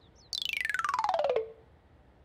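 Cartoon sound effect: one pitched tone glides steeply downward over about a second with a rapid flutter, settling briefly on a low note before it stops.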